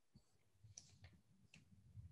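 Near silence, with a few faint clicks, about four in two seconds, over a faint low hum.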